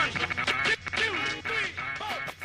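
Hip hop track's outro: turntable scratching, rapid squiggling pitch glides over the beat, getting quieter.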